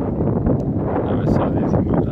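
Wind buffeting the microphone: a loud, steady low rumble with small irregular crackles.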